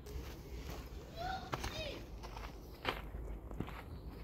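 Footsteps on dirt ground as someone walks around a parked car, a few soft steps standing out, with faint distant voices in the background.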